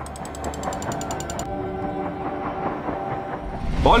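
Tense dramatic background score: a low drone and sustained tones under a rapid, even mechanical ticking that stops about one and a half seconds in.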